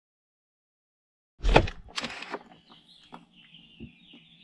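Silence, then about a second and a half in two loud short bursts of noise half a second apart, followed by songbirds chirping with a faint low hum beneath.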